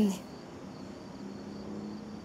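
Faint, steady high-pitched tone over quiet room noise, just after a woman's voice trails off at the very start.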